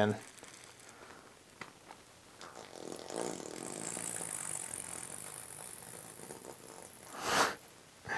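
Plastic bag of wet hydrostone gypsum-cement slurry being squeezed out through a cut corner into a silicone mold. The plastic crinkles softly and the slurry squelches wetly as it pours, starting about two and a half seconds in. A short, louder rush of noise comes near the end.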